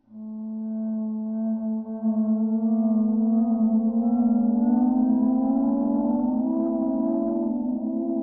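Eerie film soundtrack drone: sustained layered tones swell in suddenly at the start, then slowly rise in pitch and grow fuller.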